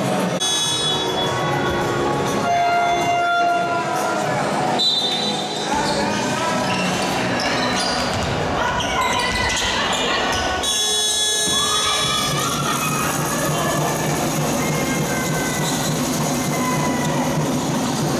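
Basketball game sounds in a large sports hall: a ball bouncing on the wooden court, with players' and spectators' voices echoing.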